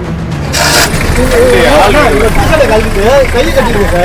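People's voices talking loudly over a low steady rumble. About half a second in, a short burst of noise comes just before the voices start.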